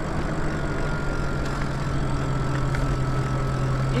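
Electric bike motor running steadily under load up a hill: a constant low hum with a faint high whine that comes in about half a second in, over wind and tyre noise.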